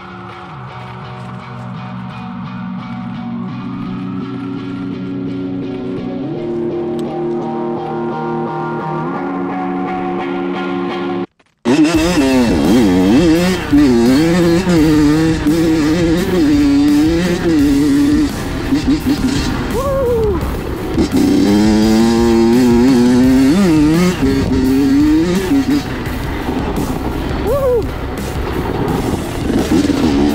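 Guitar-led backing music for about the first eleven seconds, then an abrupt cut to a Honda CR85's 85 cc two-stroke single-cylinder engine being ridden, its revs rising and falling over and over.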